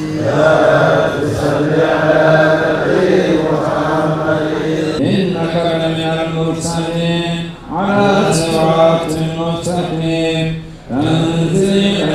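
Men's voices chanting an Arabic religious invocation in long, drawn-out phrases, with short breaks about five, seven and a half and eleven seconds in.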